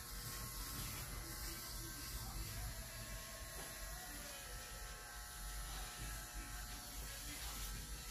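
A faint, steady low hum.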